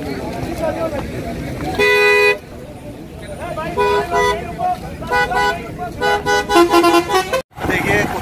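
A vehicle horn gives one long blast about two seconds in, then a string of short toots at a few different pitches from about four to seven seconds, over crowd chatter. The sound cuts off suddenly just before the end.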